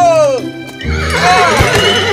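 Cartoon sound effect of a horse whinnying as it rears up, a long, wavering cry filling the second half, over background music. A man's falling shout of alarm comes at the very start.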